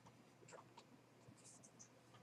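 Near silence: room tone, with a few faint, brief high scratches or ticks.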